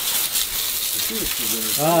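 Steady hiss of water from a garden hose spray nozzle spattering onto a car's bodywork and wheel.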